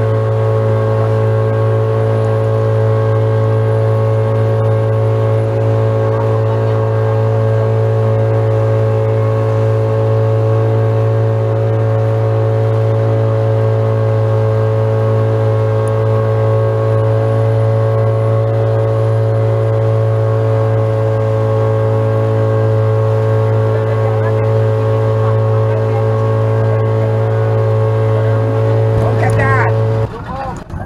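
Boat engine running at a steady, constant speed as a wooden passenger boat cruises over open water; the engine sound drops away at the very end as the boat comes alongside.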